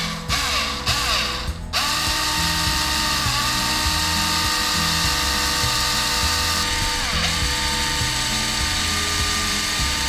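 Black+Decker cordless drill with a fine bit boring a small hole in a thin piece of carved wood. The motor whines in a few short bursts, then runs steadily from about two seconds in, its pitch dipping briefly twice as the bit bites.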